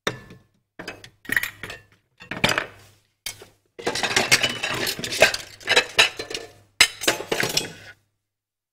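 Kitchen dishes, cookware and utensils clinking and clattering as they are handled, in a string of short bursts with a longer, busier spell in the middle.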